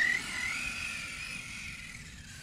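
Arrma Kraton electric RC truck driving off: a high, thin motor whine that fades as the truck pulls away.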